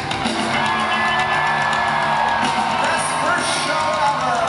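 Pop-punk band playing live: electric guitar, bass and drums with a man singing lead, heard from within the audience.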